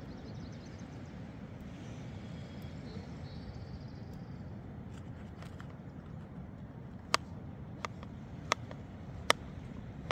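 A knife slicing a mushroom on a plastic cutting board: sharp taps about every three-quarters of a second, starting about seven seconds in, over a steady low rush of outdoor background noise.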